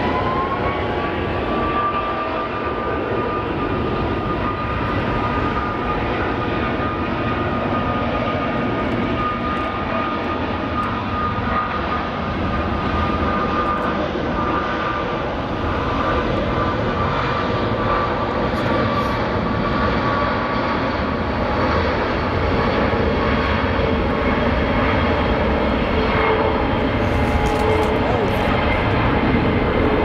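Jet engines of a Boeing 747 airliner heard at a distance: a steady noise with a high whine that climbs at the start and holds for about twenty seconds before fading. A lower whine comes in during the second half.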